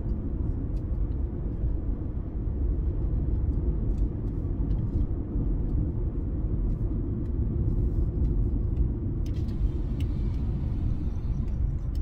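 Steady low rumble of a car heard from inside its cabin, with a hiss in the higher range coming in about nine seconds in.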